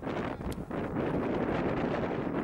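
Wind buffeting the microphone, a steady rumbling noise, with a brief click about half a second in.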